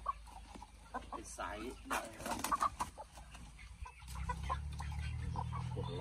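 Chickens clucking with scattered short calls and a few sharp knocks. About four seconds in, a low steady rumble comes in underneath.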